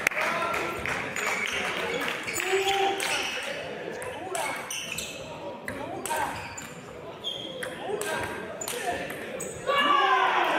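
Table tennis rally: the celluloid ball clicks off rubber paddles and bounces on the table in an irregular quick run of hits, echoing in a large hall. Voices run underneath, and a loud voice breaks in near the end.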